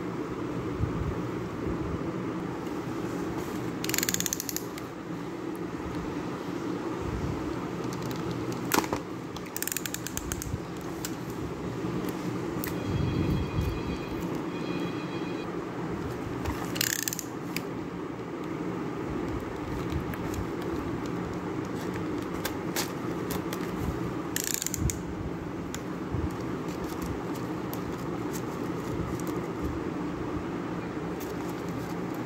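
Unboxing handling noise: a shrink-wrapped retail box being handled and cut open, with several short crinkles and rustles of plastic film. Midway comes a fast run of even clicks, like a box cutter's blade slider being ratcheted. A steady room hum lies underneath.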